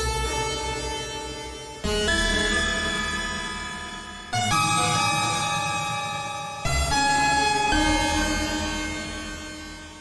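Arturia Pigments software synth playing a dissonant, detuned patch of stacked saw-wave chords through a pitch-shifting delay. New sustained chords come in about two, four and a half and seven seconds in, each fading slowly; dissonant and weird.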